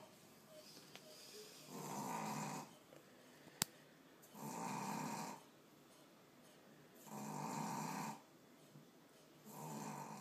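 Boston Terrier snoring: slow, even snores about a second long, roughly every two and a half seconds. A single sharp click about a third of the way through.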